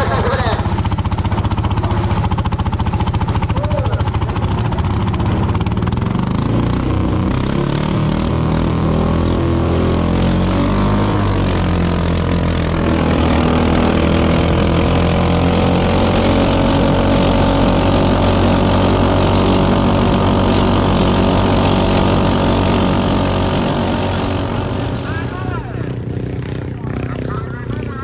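Modified racing rice tractor's engine running flat out on a drag run, its pitch shifting over the first dozen seconds before it holds a steady, loud high-speed note. The sound fades off near the end.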